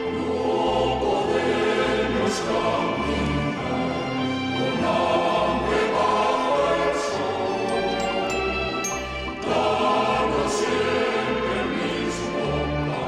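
Slow sacred choral music with instrumental accompaniment, held notes over a bass line that moves in long steps: a hymn played during the distribution of communion at Mass.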